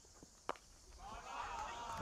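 A single sharp crack of a cricket bat striking the ball, about half a second in, off a shot run down behind point. Faint voices follow and grow louder toward the end.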